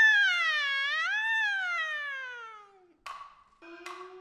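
A high female voice holding a long, drawn-out stylized Kunqu opera call that slides down, rises, and then falls away over nearly three seconds. About three seconds in, sharp knocks of the percussion sound and a steady held note from the accompanying ensemble begins.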